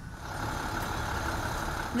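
Steady rumble of an idling truck engine.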